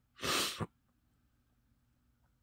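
A person's short, sharp exhale close to the microphone, about half a second long, near the start.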